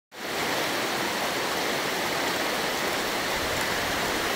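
River water rushing over rapids: a steady, even rush of white water.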